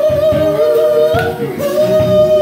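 Woman singing live, holding one long note with a slight waver, over a band of bass guitar, keyboard and drums.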